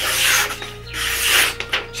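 A freshly stropped Roselli Bear Claw knife in UHC wootz steel slicing through a sheet of paper: two slicing strokes of well under a second each, the second starting about a second in. The clean cuts show the edge is back to paper-slicing sharp.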